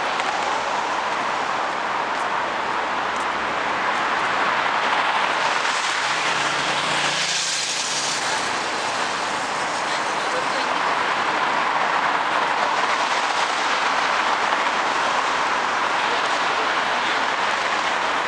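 Steady city street traffic noise at night, a continuous rush of engines and tyres. About seven seconds in, a louder hiss swells and fades over roughly two seconds.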